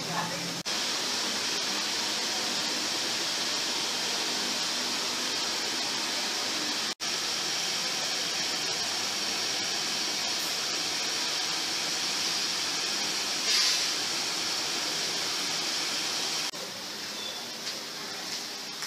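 A steady, even hiss that starts and stops abruptly, with a split-second dropout about seven seconds in.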